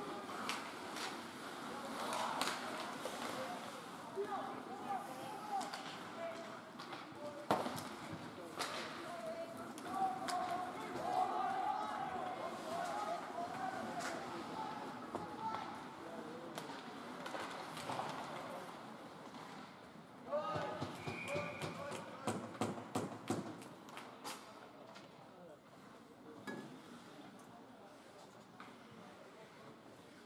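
Indoor ice hockey game heard from the stands: a steady murmur of voices from spectators and players, broken by sharp clacks of sticks and puck. The clacks come thick and fast from about twenty to twenty-four seconds in, and the rink goes quieter near the end.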